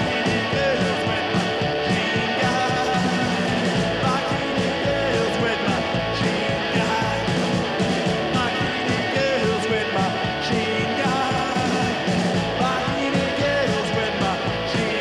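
Live rock band playing loud and fast: distorted electric guitar over drums with a steady, driving beat.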